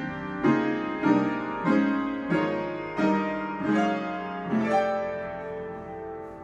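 Upright piano being played: a run of chords struck at a steady, even pace, a new chord roughly every half-second to second, each ringing on and fading before the next.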